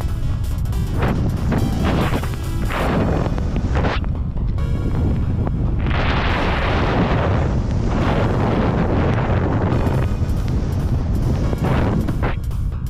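Wind buffeting the microphone of a skier going downhill, with skis hissing over snow in swells as the turns come and go.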